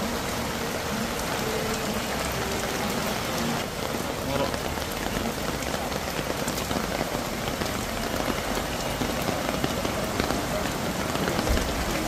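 Steady heavy rain falling, a constant even hiss with no let-up.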